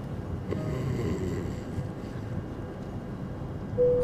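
Steady low rumble of an airliner cabin in flight, with a short steady tone near the end.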